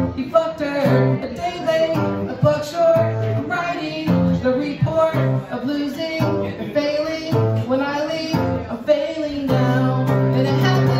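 A man singing live while strumming a Gretsch electric guitar, voice and guitar going on together without a break.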